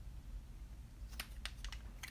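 Faint room tone, then a handful of light, quick clicks in the second half, the kind made by handling a small plastic item.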